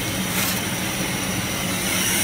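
Steady drone of the laser cutter's fume extraction fan and air-assist pump running, with a steady high whine. A brief scrape of scrap cardboard and plywood sheets being handled comes about half a second in.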